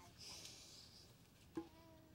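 Near silence, with faint children's babbling and a short click about one and a half seconds in.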